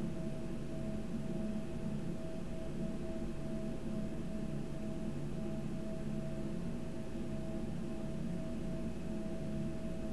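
Steady low hum with a constant mid-pitched tone running through it, unchanging throughout.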